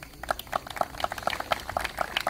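Light applause from a small crowd: many irregular, overlapping hand claps.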